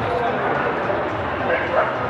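A dog barks once near the end, a short sharp bark over the steady chatter of a crowd in a large hall.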